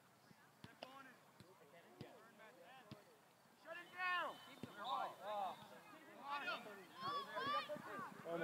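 Youth soccer players shouting to each other across the field: raised voices calling out again and again from about halfway through. Before that, a few sharp thuds of the ball being kicked.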